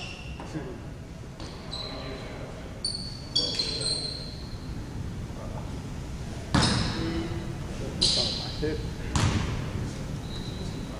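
Basketball bouncing on a hardwood gym floor three times, each bounce echoing in the hall, after a few short high sneaker squeaks on the court.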